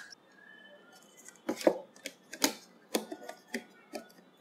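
A circuit board being set down and fitted onto an LED TV's sheet-metal back chassis: a series of about six light knocks and clicks, starting about a second and a half in.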